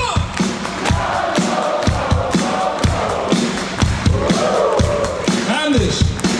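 Live rock band playing on a concert PA with a steady drum beat of about two beats a second, with the crowd's voices joining in.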